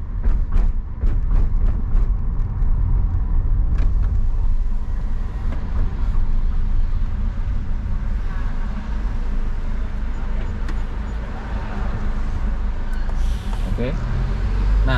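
Car running at low speed, its engine and tyre rumble heard from inside the cabin, with a run of short clicks and knocks in the first few seconds.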